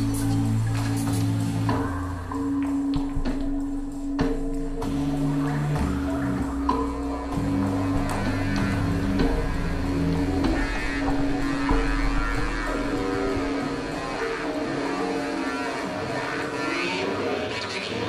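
Live electronic music from electronic instruments and a berimbass: a held droning tone runs through most of it, over a low bass line that changes note every couple of seconds, with no clear beat.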